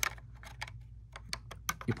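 A run of light, irregular clicks and taps, about a dozen in two seconds, over a faint steady hum.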